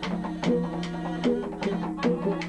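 Traditional music with drums: quick drum strokes, about five a second, under a melody that steps between held notes.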